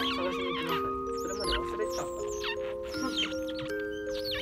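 Many high, wavering squeaks from twelve-day-old otter pups as they nurse against their mother, over background music with slow held notes.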